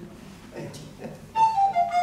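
Alto recorder starting a quick Macedonian folk tune about a second and a half in: a run of short, clear notes stepping down from a high first note.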